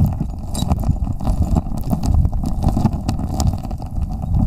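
Water stirred by a gloved hand fanning a creek bed, heard underwater: a steady low rumble of moving water and silt, with many small scattered clicks of gravel and grit.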